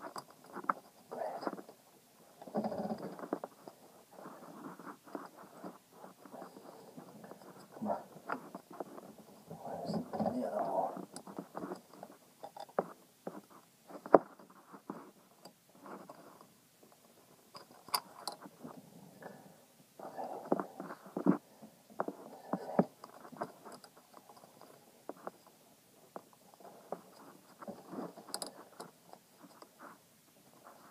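Fingers rubbing and brushing right against the phone's microphone while handling a throttle cable and its linkage, heard as irregular scuffing with small clicks and one sharp click about 14 seconds in.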